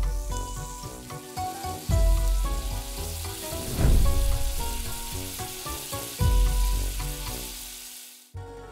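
Diced bacon sizzling as it fries in hot oil in a pan, starting as the meat drops in. Background music plays over it, with a few deep bass hits.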